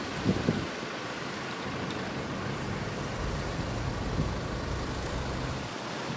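A police van's engine running as the van moves slowly in front of the shop: a low rumble that grows louder through the middle. Two brief low thumps come just after the start.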